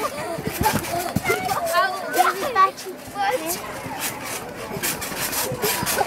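Children shouting and chattering as they play on a trampoline, with scattered short scraping noises between the voices.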